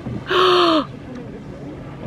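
A woman gasps once, a short breathy cry whose pitch drops at the end.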